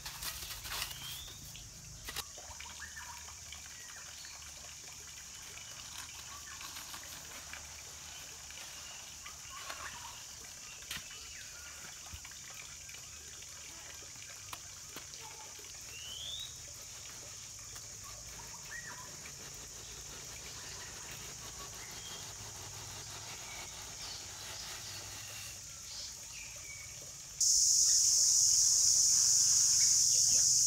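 Outdoor ambience of a steady high-pitched insect drone with scattered short rising bird chirps, and a few light knocks as concrete ring moulds are handled. Near the end the insect drone suddenly becomes much louder.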